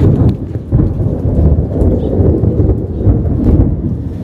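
Thunder rumbling, a long, low, uneven roll during a rainstorm.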